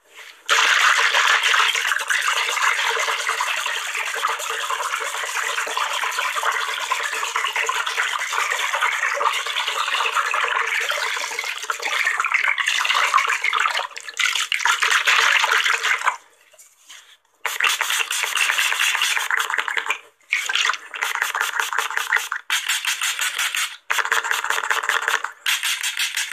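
A spray bottle being sprayed very rapidly close to the microphone: a nearly unbroken hiss of spraying for about fifteen seconds, then a brief pause and a run of quick separate spritzes.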